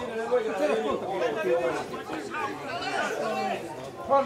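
Several voices talking and calling out over one another, indistinct, with no single voice standing out.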